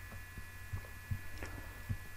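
Low, steady electrical hum with a faint high whine in the microphone's background, and a few soft low thumps scattered through it.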